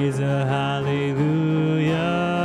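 Live worship band playing with guitars and bass under sung vocals held on long notes, the melody stepping up in pitch about halfway through.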